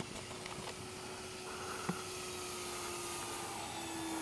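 Electric motor and propeller of an FMS P-47 Razorback RC warbird in flight: a faint, steady drone that grows slightly louder toward the end as the plane comes closer. A single sharp click at the very start.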